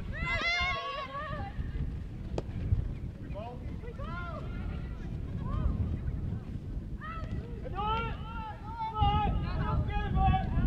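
High-pitched voices shouting and calling out in short bursts at a football match, over a steady low rumble, with a single sharp knock about two and a half seconds in.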